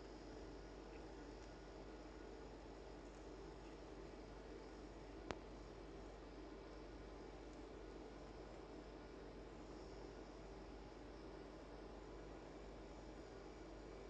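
Near silence: a faint steady hiss of room tone, broken once by a single short click about five seconds in.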